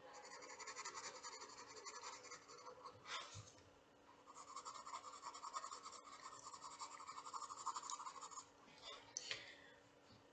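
Faint graphite pencil scratching on sketchbook paper in quick repeated shading strokes, with a short pause a little over three seconds in.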